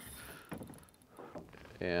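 Quiet water sound around a small fishing boat, with a few faint light knocks, and a man's voice starting right at the end.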